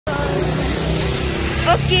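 Mercedes-Benz Citaro city bus's engine running with a steady low hum as it comes along the road, with a car driving past.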